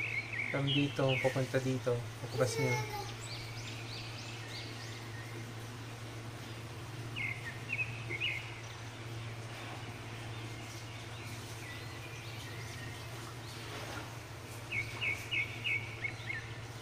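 Bird chirping in short quick series of high notes, once about halfway through and again near the end, over a steady low hum.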